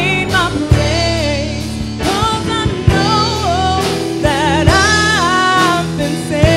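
Live gospel praise band playing: a woman sings a held, wavering melody line over drum kit, electric guitar, bass and keyboard, with the drums hitting in a steady beat.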